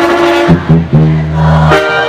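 Mexican banda brass band playing live, with long held low bass notes under the melody of the horns and reeds.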